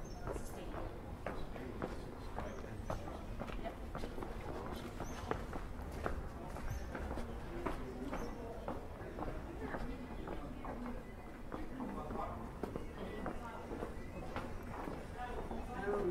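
Footsteps on a cobblestone street at a steady walking pace, each step a short knock. Faint voices of people talking come in near the end.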